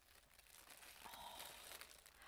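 Faint crinkling and rustling of black tissue paper being unfolded by hand.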